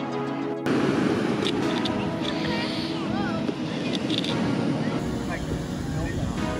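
Electronic background music cuts off just after the start. Then comes a steady wash of surf on the beach, with distant people talking and a few short rising-and-falling whistles around the middle.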